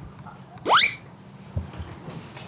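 A short whistle-like tone sliding quickly upward, under half a second long: a comic rising-whistle sound effect of the kind edited into TV variety shows.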